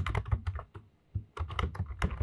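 Computer keyboard being typed on: quick runs of key clicks, with a short pause a little before the middle, as a class name is entered.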